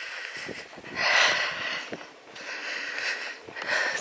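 A walker breathing hard close to the microphone, four long breaths with the loudest about a second in, with faint footsteps on a woodland path.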